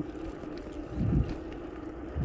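Wind noise rumbling on the microphone of a handlebar-mounted phone on a moving bicycle, with a stronger gust about a second in.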